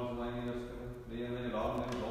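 A man's voice chanting Orthodox liturgical prayer on a near-monotone held pitch, with a brief break about halfway through.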